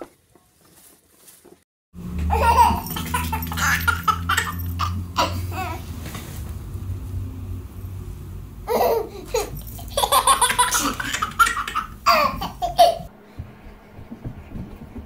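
A baby laughing in several bursts over a steady low hum, after a brief near-silent gap at the start.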